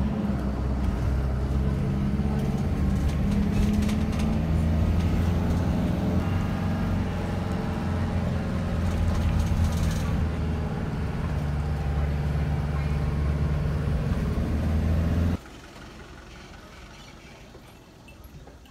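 Minibus engine and road noise heard from inside the cabin, a steady low drone with a slight rise and fall in engine pitch as it climbs a winding road. It cuts off suddenly about fifteen seconds in, leaving much quieter open-air sound.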